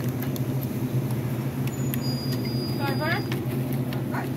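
Steady low hum of convenience-store counter machines, with scattered light clicks and a brief distant voice about three seconds in.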